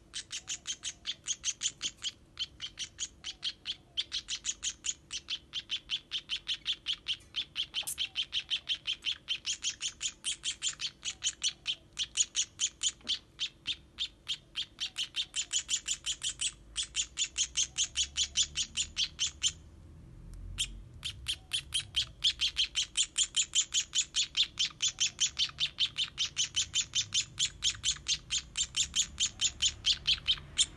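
Baby sparrow chirping rapidly and insistently, about five short high chirps a second, with a brief pause about two-thirds of the way through: the begging calls of a nestling being hand-fed.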